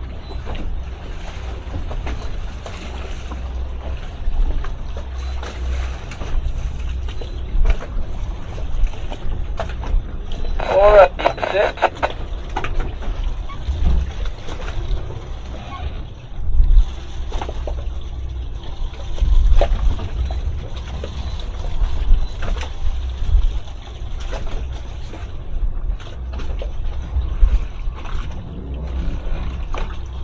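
A boat engine running with a steady low rumble, with wind buffeting the microphone and occasional knocks. A short burst of voice comes about 11 seconds in.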